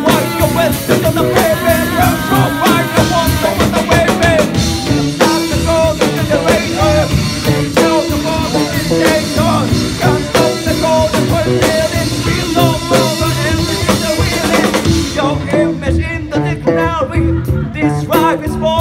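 Live rock band playing loudly: electric bass, electric guitar and drum kit with a man singing into a microphone. The high cymbal hiss drops out about fifteen seconds in.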